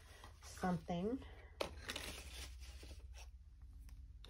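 Paper being handled at a craft table: a sharp tap about a second and a half in, then about a second of crinkling, tearing paper noise. Before it comes a brief two-note hum from a voice.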